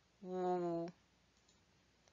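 A voice sounding out the consonant /w/ on its own as a single held "www" at a steady pitch, lasting under a second.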